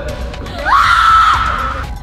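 A woman's high-pitched scream that rises sharply about two-thirds of a second in, holds for about a second and tails off slightly, over background music.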